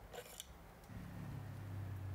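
Faint clicks from paintbrushes being handled and picked through, then a low steady hum from about a second in.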